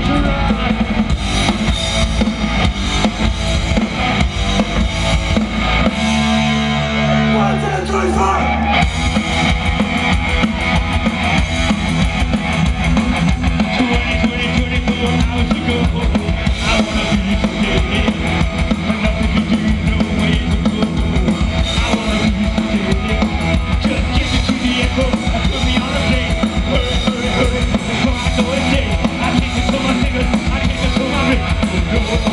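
Live punk rock band, drum kit and electric guitars playing loud. About six seconds in the playing gives way to a couple of seconds of held low notes, then the full band kicks in with a new song.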